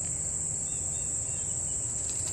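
Steady, high-pitched insect chorus, a continuous cricket-like trilling, with a low rumble underneath.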